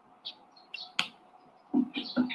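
Small birds chirping in short, high chirps in the background, with one sharp click about a second in.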